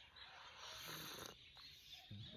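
A person slurping a sip of tea from a cup: one faint airy slurp lasting about a second.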